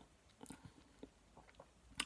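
Near silence broken by a handful of faint mouth clicks and lip smacks from a person savouring a mouthful of beer.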